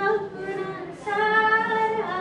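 A woman singing a Hindi song unaccompanied into a microphone: a short phrase, then a long held note from about a second in.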